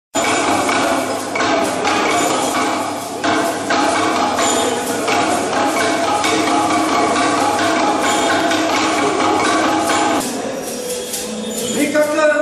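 Bamboo stamping tubes knocked on the floor in a slow, uneven beat, about one to two knocks a second, under music with long held notes. The music stops about ten seconds in, and a voice begins near the end.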